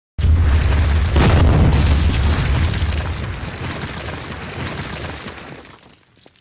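A cinematic boom sound effect: a sudden deep hit about a fifth of a second in, with a second swell about a second later, then a heavy rumble that fades away over about five seconds.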